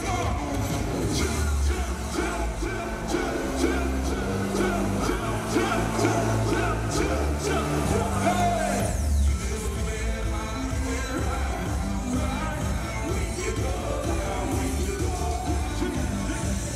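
Live hip-hop music played loud through an arena PA: rapped and sung vocals over a heavy, steady bass line, recorded from the audience.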